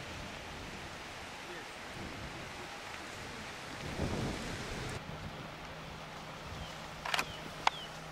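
Steady outdoor background hiss in open grassland. About halfway through, a low steady hum joins it, and two sharp clicks come near the end.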